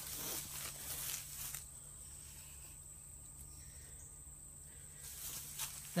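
Footsteps and rustling through tall grass and weeds, busiest in the first second or so and again near the end, over a steady high-pitched insect drone.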